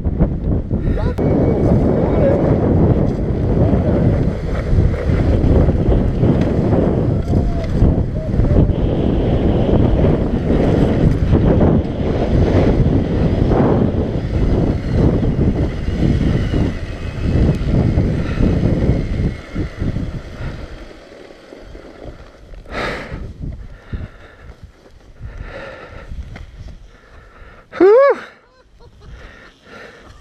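Dirt bike riding a rough trail, with wind buffeting the camera microphone: a dense, loud low rumble that drops much quieter about twenty seconds in as the bike eases off. Near the end there is a short rising sound.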